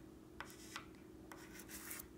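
A pastel stick rubbed across paper in about four short, faint strokes.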